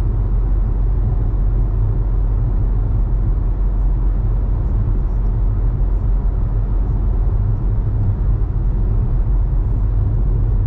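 Steady low road rumble of a car cruising at freeway speed, tyre and engine noise heard from inside the cabin.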